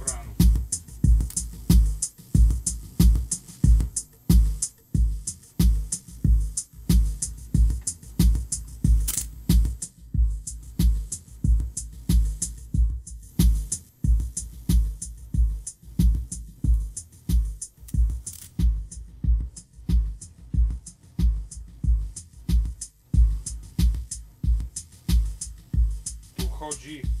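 Homemade drum machine playing a steady electronic beat over speakers: a deep, strong bass kick on every beat, with crisp hi-hat ticks between.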